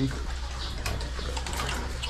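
A steady rush of running water over a low steady hum.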